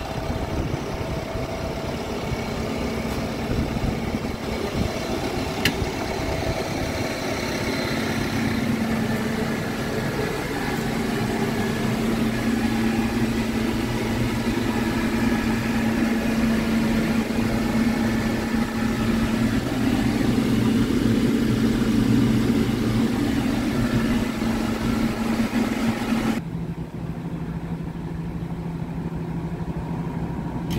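Bomag BW213 D-5 single-drum roller's diesel engine idling steadily. About four seconds before the end the sound abruptly turns duller, losing its higher hiss.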